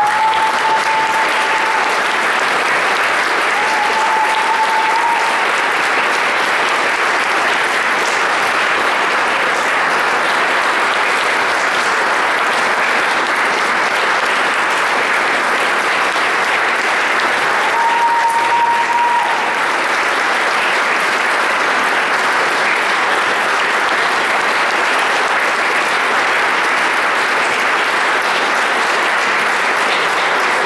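Audience applauding steadily, breaking out just as the music ends. A short, steady high tone sounds over the clapping three times.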